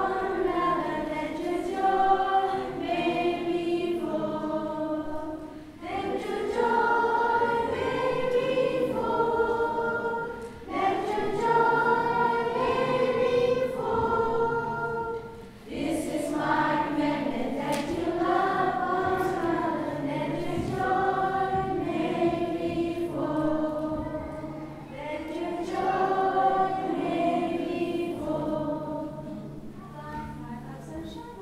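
Children's choir singing a song together, in sung phrases broken by short pauses every five seconds or so.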